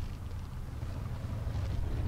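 A low, steady rumble inside a vehicle cabin, with no other distinct event.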